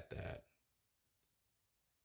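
A man's voice, a brief two-part utterance lasting about half a second, then near silence.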